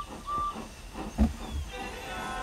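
Steam locomotive sound effects: two short high whistle peeps, then puffing and hissing with one loud low thump about a second in. Background music begins near the end.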